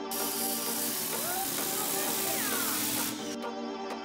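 Electric pressure washer spraying water: a loud, steady hiss that cuts off suddenly about three seconds in, over background music.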